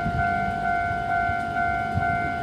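Electronic warning alarm sounding a steady multi-tone note that pulses about twice a second, with a low rumble underneath.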